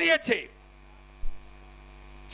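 Steady electrical mains hum from a public-address sound system, left bare in a pause between spoken phrases, with a brief low thump about a second in.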